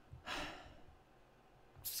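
A man's short audible breath, a brief rush of air about a third of a second in, taken between spoken sentences.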